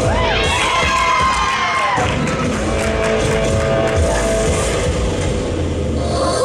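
Upbeat floor-exercise music playing while a group of teammates cheers and whoops over it.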